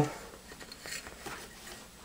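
Faint handling of Mossberg 500 shotgun parts as the shell lift is fitted into the receiver: a few soft metal clicks and rustles.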